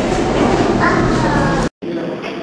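Visitors' voices and chatter echoing in a large indoor hall, with a raised, excited voice about a second in; the sound cuts off abruptly near the end.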